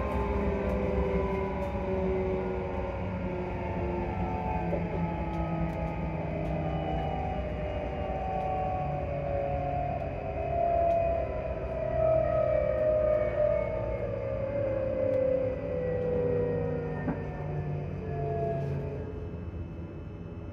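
Electric traction motors of a ScotRail Class 334 electric multiple unit whining inside the carriage, several tones falling slowly and steadily in pitch as the train slows on its approach to a station stop, over a low running rumble.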